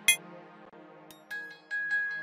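Omnisphere software synthesizer presets being auditioned: a held synth chord fades under a sharp click, then about a second in a bright, bell-like arpeggio of short plucked notes starts over a steady high tone.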